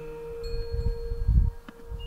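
Clear chime-like tones ringing and slowly dying away, one high note struck about half a second in and another near the end, over a low rumble that swells a little past the middle.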